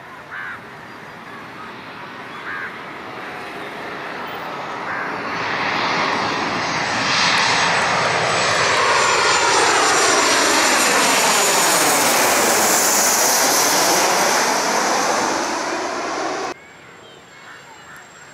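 Twin-engine jet airliner on landing approach passing low overhead: the engine noise builds over several seconds to its loudest in the middle, with a high whine and a sweeping swish as it goes over, then cuts off abruptly near the end.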